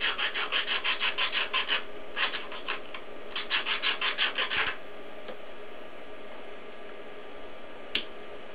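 Sharp-edged file rasping back and forth across the thin glass cone tip of a tube to cut the tip off, in quick strokes of about five a second, in three runs that stop just under five seconds in. A single click near the end.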